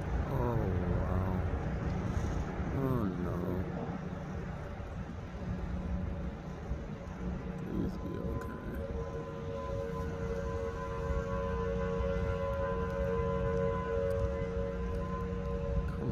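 An outdoor warning siren sounds a long steady tone that grows louder about halfway through, over the rumble of gusty wind on the phone microphone as the tornado passes.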